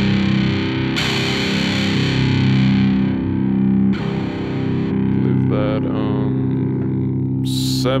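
Distorted electric guitar chords through a Zoom G3Xn multi-effects processor on a high-gain amp and 2x12 cabinet model, struck at about one second and again at about four seconds and left ringing. The top end brightens and dulls as the cabinet model's treble control is swept.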